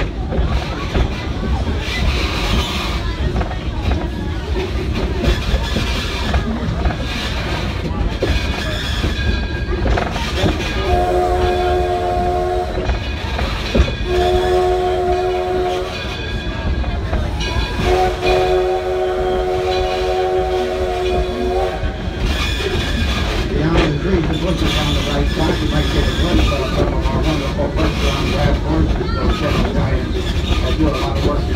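Steam locomotive Edison's whistle blowing three blasts over the running train, starting about a third of the way in: two of about two seconds each, then a longer one of about four seconds. Under it, the steady rumble and clickety-clack of the train rolling along the track.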